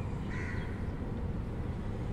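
One short bird call about half a second in, over a steady low rumble.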